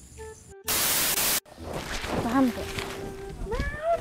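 A loud burst of static hiss, under a second long, that cuts in and off abruptly, followed by voices.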